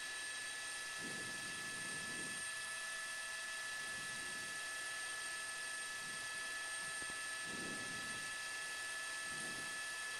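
News helicopter cabin noise heard through the reporter's headset microphone: a steady, even hiss with a few faint steady high whines running through it.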